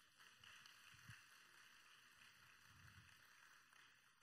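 Near silence: a faint, even hiss of room noise.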